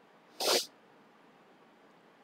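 A man's single short, sharp intake of breath, about half a second in, during a pause in reading; otherwise near silence.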